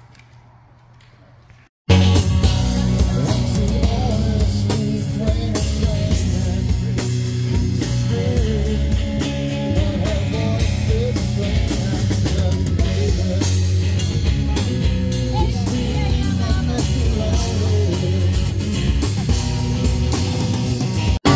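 Faint room tone for about two seconds, then rock music starts suddenly and runs on loud and unbroken: a band with a singer, electric guitar and drum kit.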